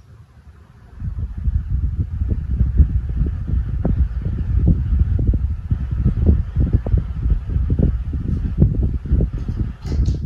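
Britânia desk fan running, its airflow buffeting the microphone in an uneven low rumble that starts about a second in, with a faint steady hum above it.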